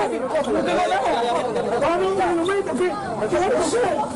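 Several men talking and calling out over one another at once, a jumble of overlapping voices during a scuffle to hold someone down.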